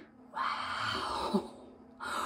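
A breathy drawn breath lasting about a second, with a small click of a plastic eyeshadow compact partway through.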